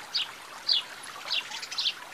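Cartoon birdsong: four short, high, falling chirps about half a second apart, over a faint trickling-stream background.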